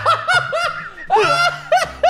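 Two men laughing hard together, a quick string of short laughs with one longer, higher laugh a little past a second in.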